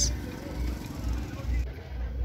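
Street background noise: a low, uneven rumble with no speech.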